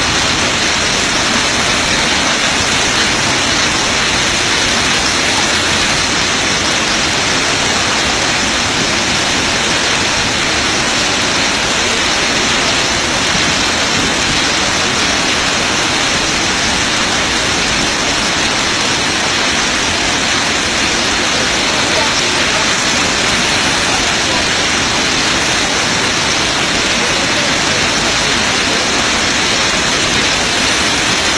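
Loud, steady rushing noise that does not change, with no distinct events.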